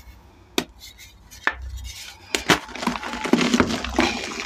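A pressed block of reformed, dyed gym chalk squeezed in bare hands. It gives several sharp snaps as it cracks apart, then a denser crunching and crumbling near the end as it breaks down to powder.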